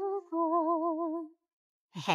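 A voice humming a wavering note: a brief steady note, then a longer one with a fast, even wobble in pitch that stops about a second and a half in.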